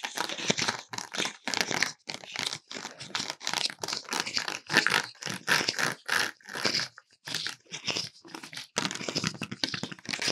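Close-miked crinkling and scratching of Halloween props: a thin printed mask being flexed and handled, and fingers scratching a small decorative pumpkin. The sound comes as a rapid, irregular stream of short scratchy strokes, with a couple of brief pauses in the second half.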